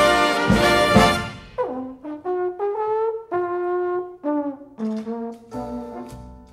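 A jazz big band plays a loud full-ensemble passage that stops about a second and a half in. A lone trombone carries on unaccompanied: it opens with a falling slide glide, then plays a string of separate held notes, quieter than the band.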